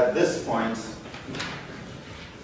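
Brief indistinct speech in a reverberant classroom, a voice talking for about the first second, then again briefly.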